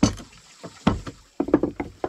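Wooden knocks: a wooden mallet driving a steel chisel into a wooden board, a strike at the start and another about a second in. A quick run of five or six knocks follows near the end.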